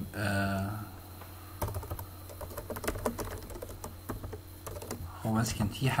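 Computer keyboard typing: a run of irregular key clicks from about a second and a half in until shortly before the end, as a command is typed into a terminal.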